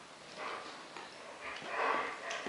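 Soft, breathy noises from a German Shepherd puppy nosing at a treat held to its face: one about half a second in and a louder one near the end.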